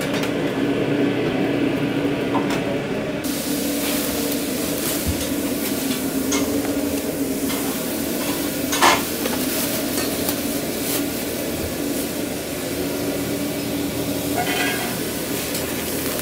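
Food sizzling as it fries in a food truck kitchen. The sizzle grows fuller about three seconds in and runs on steadily over a low, even hum, with a few sharp clatters.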